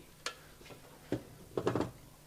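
Two sharp light clicks about a second apart, then a brief scuffing sound, as a light bulb is handled and fitted onto a lamp.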